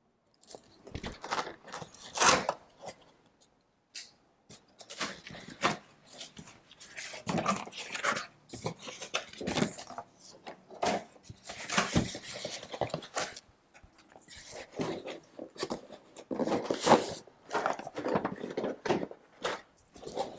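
A utility knife slitting packing tape on a cardboard box, then cardboard flaps and a cardboard insert scraping and rustling as the box is opened, in irregular bursts.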